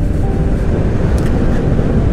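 Steady wind rush and road drone of a Honda ADV 150 scooter, a 150 cc single-cylinder with CVT, cruising at road speed, heard from a handlebar-mounted camera.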